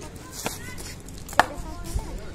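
A cricket bat striking a cricket ball in the nets: one sharp crack about a second and a half in, the loudest sound, with a fainter knock about half a second in.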